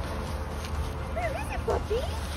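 A cavapoo puppy whining and yipping in a quick run of short rising-and-falling calls about a second in, excited while hunting through the leaves for her ball.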